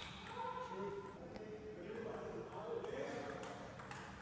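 Faint voices in a large hall, with a few light clicks of a table tennis ball on bat and table.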